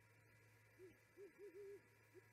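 Great horned owl hooting: a faint series of four low hoots starting a little under a second in, the last one held longest.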